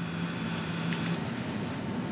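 Steady machinery and ventilation noise in a warship's operations room, with a low hum that cuts off a little over halfway through.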